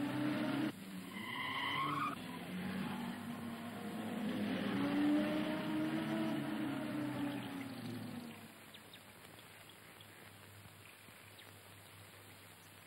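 A car's tyres squeal briefly about a second in. Then its engine runs for several seconds with a pitch that rises and then falls as the car pulls up, dying away at about eight seconds.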